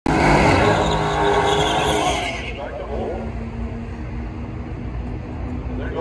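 Cars' V8 engines at a drag strip start line: a loud engine with a harsh hiss over it for about the first two seconds, which cuts off, then engines idling steadily.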